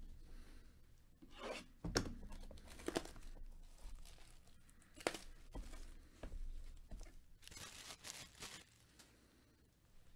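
Plastic shrink-wrap being torn and peeled off a sealed trading-card box, in several short crinkly rips, the longest near the end.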